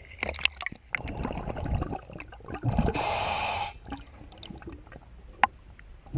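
Water sloshing and splashing around a camera at the waterline against a boat hull, with irregular splashy clicks. About three seconds in comes one loud rushing, gurgling burst lasting under a second, then quieter sloshing with a single sharp tick near the end.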